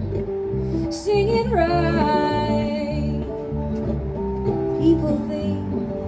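Live acoustic guitar strumming over a steady electric bass line, with a woman's voice holding one long sung note from about a second in.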